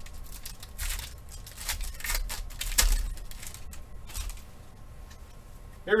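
A foil trading-card pack wrapper being torn open and handled, an irregular string of sharp crackles and rustles, fainter in the last couple of seconds.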